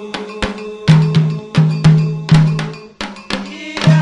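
Candomblé percussion: an agogô iron bell and atabaque hand drums playing a rhythm of sharp bell strikes and ringing low drum strokes, with a short lull about three seconds in.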